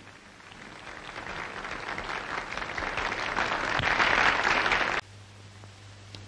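Nightclub audience applauding, swelling steadily louder for about five seconds, then cut off abruptly.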